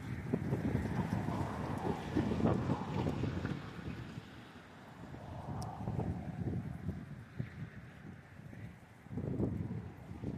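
Wind buffeting the microphone in gusts, a low rumble that eases off about halfway through and picks up again near the end.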